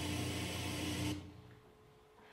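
Television static sound effect played over the theatre's speakers: a loud, even hiss with a low buzz under it, cutting off suddenly about a second in.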